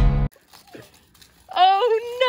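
Acoustic guitar music cuts off just after the start. After a short quiet spell with faint clicks, a high, drawn-out vocal sound that bends in pitch begins about one and a half seconds in.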